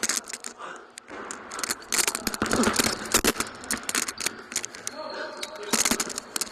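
Basketball game play heard through a body-worn mic: dense rustling, clicks and knocks from the player's clothing, footsteps and the ball on a hardwood gym floor, with a short squeak about five seconds in.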